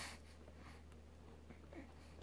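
Near silence over a low steady hum, with a soft breath-like rush right at the start and a few faint small sounds: a drowsy baby breathing and sucking as it feeds from a bottle.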